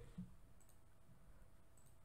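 Near silence, with a few faint computer keyboard clicks.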